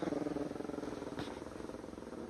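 A chihuahua growling continuously in a rapid, rattling pulse that slowly fades: an angry warning growl.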